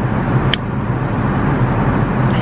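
Steady drone of an airliner cabin in flight, with a single sharp click about half a second in.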